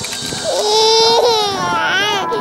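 A baby crying close to the microphone: a long, held wail starting about half a second in, with a shorter cry breaking off near the end.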